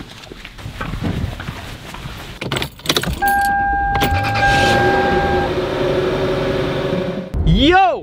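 Keys jangling and rattling, then about three seconds in a 2005 Lexus LS430's V8 starts up and runs steadily at idle, heard at the exhaust, with a steady high tone sounding over it for about two seconds.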